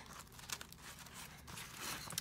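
Faint rustling and scraping of a pencil case's nylon lining as a gel pen is slid into a fabric pen slot and hands smooth the fabric down, with a few small clicks.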